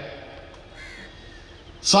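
One short, faint bird call about a second in, over a low background hiss. A man's voice through a public-address system starts again at the very end.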